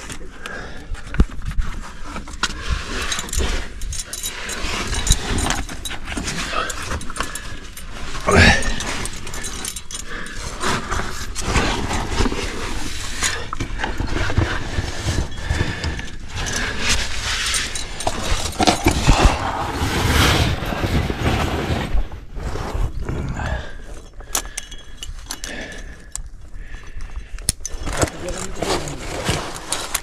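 Climbing gear jangling: carabiners and quickdraws on a lead climber's rack clink repeatedly as he moves up a chimney, over a steady rustle of movement.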